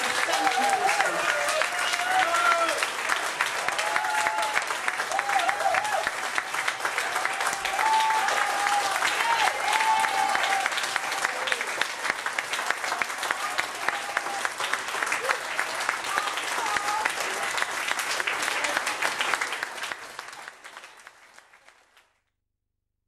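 Audience applauding, with voices calling out over the clapping in the first half; the applause fades away near the end.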